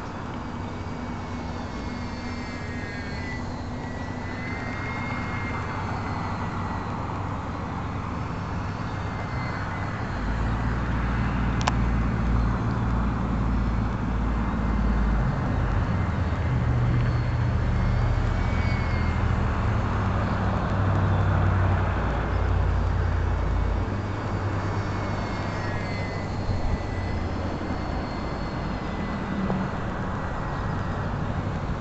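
Small electric RC airplane motor and propeller whining, the pitch wavering up and down, over a steady rush of wind on the microphone. The wind turns into a heavier low rumble through the middle of the stretch, and there is a single sharp click near the middle.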